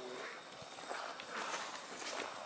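Soft footfalls on grass from a horse walking slowly with people on foot beside it: a few faint, dull thuds.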